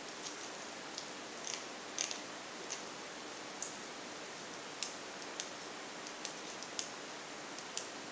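Faint, irregular small clicks and ticks from hands handling a battery-powered LED bike light, about a dozen in all, over a steady background hiss.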